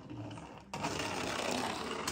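Small plastic toy monster truck rolling fast across a hardwood floor, its wheels rattling and whirring, starting about two-thirds of a second in.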